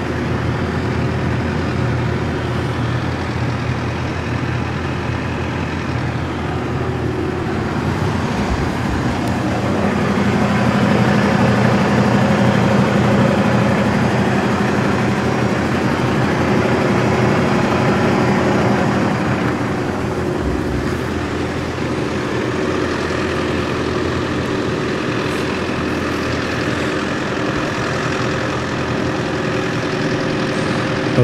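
Diesel engine of a Hongyan Genlyon C500 8x4 dump truck idling steadily, growing louder for several seconds from about ten seconds in.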